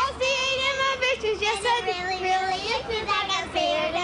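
A young girl singing solo into a microphone, with a few long held notes.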